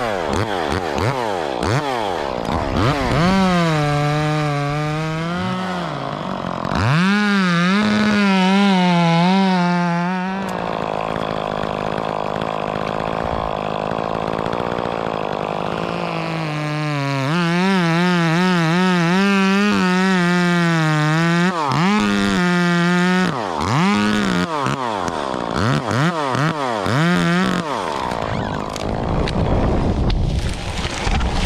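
A chainsaw revving up and down again and again while cutting in a tree, with a longer steady run in the middle.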